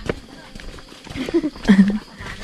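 Footsteps of people walking on a wet, muddy dirt path, a run of short steps and scuffs. Short bits of voice come in the second half, the loudest a brief sound near the end.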